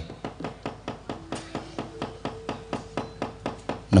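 Wooden mallet (cempala) rapping on the wayang puppet chest (kothak) in a steady, rapid series of knocks, roughly five or six a second. Faint held tones sound behind it, a low one first and then a higher one from about halfway.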